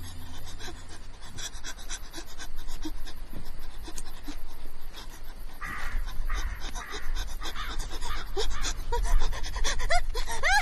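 Heavy panting breaths over a fast, rhythmic high patter, with a low rumble building from about halfway in and a few short rising whistle-like sounds near the end.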